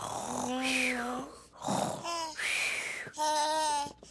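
A cartoon character's wordless vocal sounds: about four breathy hums and sighs in a row, the last one a higher held tone.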